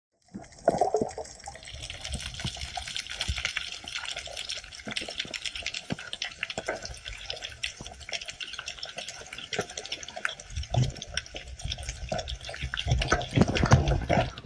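Underwater sound on a coral reef: a dense crackle of small clicks over a hiss of water noise, with low muffled rushes of water about ten seconds in and again near the end.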